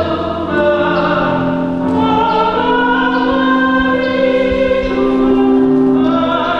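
A choir singing slowly in long held chords, the notes changing every second or two.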